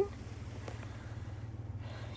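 2016 GMC Canyon's engine idling, heard from inside the cab as a steady low hum.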